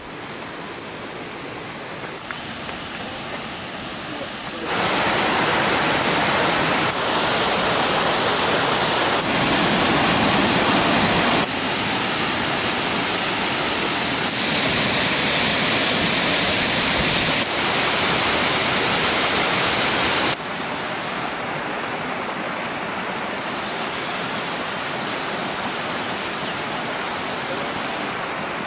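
Waterfalls and stream water rushing, a steady noise of falling water. It grows louder about five seconds in and drops back about two-thirds of the way through, changing level abruptly several times in between.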